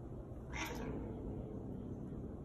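A house cat makes one short, sharp cry about half a second in, trailing off into a lower note.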